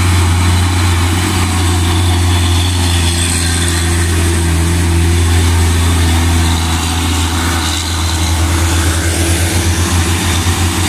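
Loaded Hino 500 dump truck's diesel engine running with a low, steady drone as it passes close, over a hiss of tyres on the wet road. Near the end the drone turns into a rapid pulsing as the next truck of the convoy comes up.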